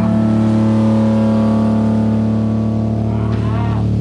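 Distorted electric guitar and bass holding one chord and letting it ring out steadily, with a short wavering pitch glide near the end.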